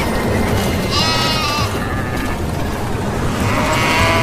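A sheep bleating twice, a wavering call about a second in and another near the end, over a steady low rumble.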